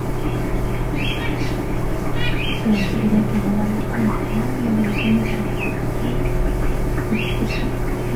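Short, high, rising chirps repeating roughly once a second, like a bird calling, over a steady electrical hum, heard through a video-call microphone.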